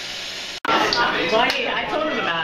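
A steady hiss, then after an abrupt cut, several people talking over one another in a room.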